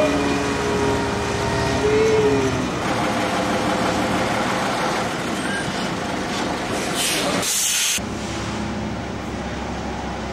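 A heavy vehicle's engine running steadily, with a hiss of released air lasting about a second, about seven seconds in.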